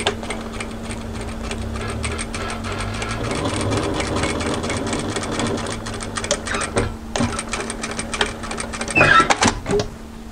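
Industrial lockstitch sewing machine running and stitching fabric, a fast even needle clatter over a steady motor hum. It stops briefly about seven seconds in, runs again, and a short louder sound comes near the end.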